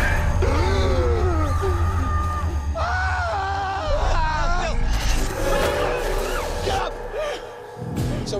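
Horror-film sound mix: wavering, wailing cries and screams over a deep rumbling drone, with a sharp hit about four seconds in. The rumble falls away near the end.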